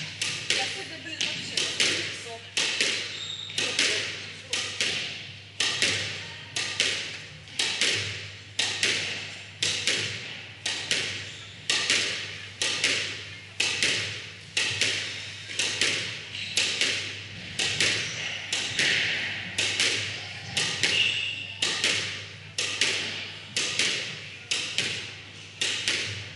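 Squash ball being hit again and again with a racket against the front wall of a squash court: a steady run of sharp strikes, about one to two a second, each ringing briefly in the enclosed court.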